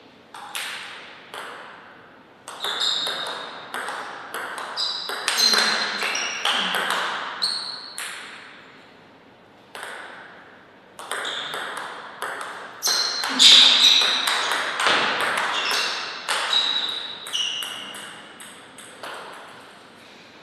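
A table tennis ball being hit back and forth in two rallies: quick sharp clicks of the ball off the paddles and bouncing on the table, each with a short ringing ping. The first rally starts about half a second in and runs to about nine seconds. After a short pause the second runs from about eleven seconds to near the end.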